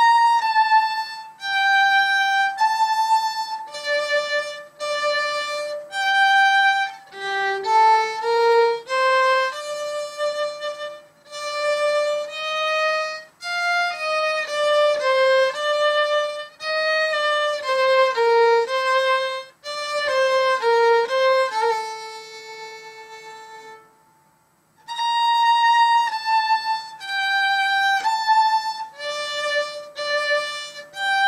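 Solo violin playing a minuet melody in separate bowed notes. About 22 seconds in it holds a lower note that fades away, stops briefly, then starts the same opening phrase again from the beginning.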